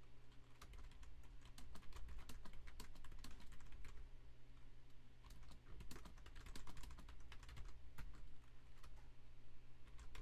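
Typing on a computer keyboard in quick runs of keystrokes, with a brief pause about halfway through, over a low steady hum.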